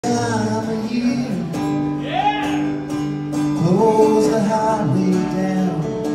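Steel-string acoustic guitar strummed in a country-style song intro, chords ringing on in a steady rhythm.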